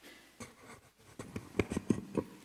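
Handling noise at a pulpit: a book being set down on the wooden lectern and the gooseneck microphone being bent, heard as rustles and a quick run of sharp knocks in the second half.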